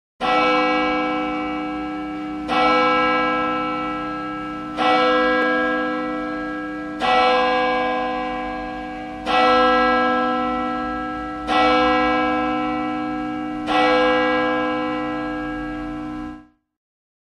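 A single church bell tolling seven times at an even pace, about one strike every two seconds, each stroke ringing on and fading slowly into the next.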